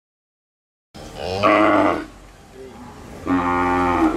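A cow mooing twice: two long, steady calls about two seconds apart.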